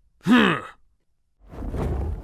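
A man's short voiced sigh-like exhalation, falling in pitch and lasting about half a second, performed as a character vocalisation. From about a second and a half in, a low rumbling background noise starts.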